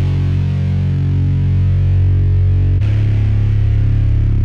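Distorted synth bass doubled by a stock electric guitar sound playing the same notes: two long held low notes, the pitch changing about three quarters of the way through.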